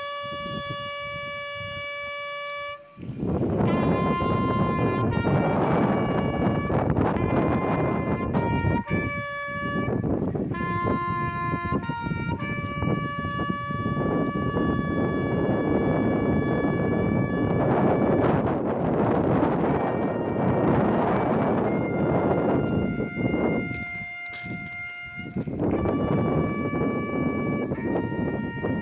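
A brass call of long held notes stepping up and down, played slowly at a police memorial ceremony. From about three seconds in, gusts of wind buffet the microphone and largely cover it.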